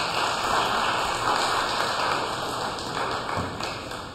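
A congregation applauding, a dense patter of many hands clapping that slowly dies down toward the end.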